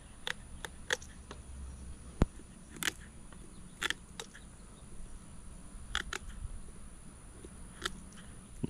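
Scissors snipping through the small bones of a flounder: about ten short, sharp clicks at irregular spacing, with one duller knock about two seconds in.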